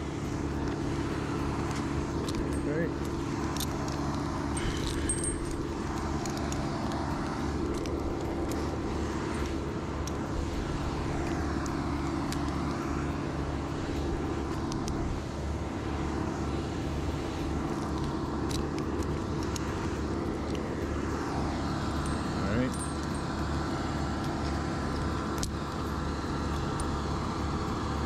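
A steady, unchanging engine hum runs throughout, with scattered light clicks and clinks over it.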